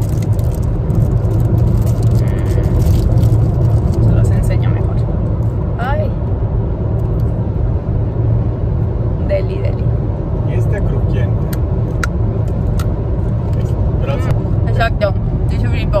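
Steady low road and engine rumble inside a moving car's cabin. In the second half, a few short sharp clicks: crunchy torrone (nougat) being chewed.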